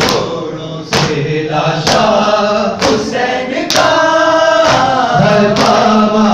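Shia mourners reciting a noha, a lament for Imam Husayn, as a group chant led by one voice on a microphone, with rhythmic chest-beating (matam) slaps about once a second.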